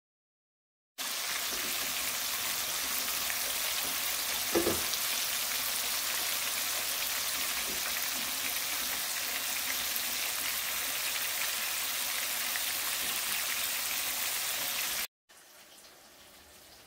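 Breaded bluegill fillets frying in a skillet of hot oil: a steady, dense sizzle that starts about a second in and cuts off shortly before the end. There is one brief thump about four and a half seconds in.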